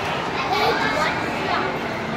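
Children's voices, playful chatter and calls while they play.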